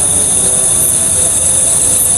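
Loud, steady, high-pitched chorus of night insects, a continuous shrill trilling that does not let up.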